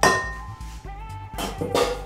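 A stainless steel mixing bowl clinks and rings briefly as a spatula knocks against it at the start, with a second short knock near the end. Background music plays underneath.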